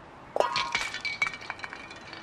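A glass object shattering with a sudden crash about half a second in, followed by about a second of tinkling, ringing shards.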